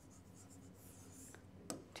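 Faint scratching and tapping of a stylus writing on an interactive display screen, with two light clicks near the end.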